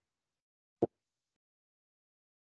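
A single short pop about a second in; the rest is dead silence.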